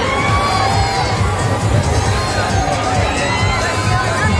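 Many riders on a spinning, tilting disc fairground ride screaming and shouting together, over a steady low hum.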